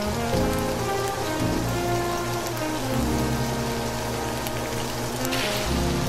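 Tofu cubes sizzling as they fry in a hot nonstick pan, a steady sizzle that starts suddenly, over soft background music.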